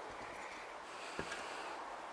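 Quiet outdoor background, with one faint short click a little past halfway.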